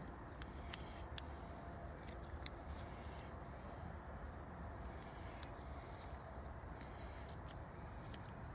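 A few faint, sharp clicks of small metal tools being handled in a scrap pile, the sharpest near the start, over a steady low background noise.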